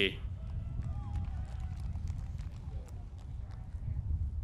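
Quiet outdoor ambience after the tail of a name called over the PA: a steady low rumble, faint distant voices and a few light ticks.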